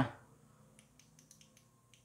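Near silence with a few faint, short clicks, small handling noises as a stone is turned in the fingers.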